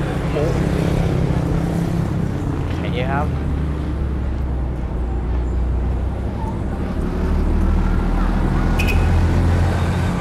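Road traffic on a busy street: a steady low engine rumble from passing vehicles, including a city bus going by close alongside. The rumble grows louder over the last few seconds.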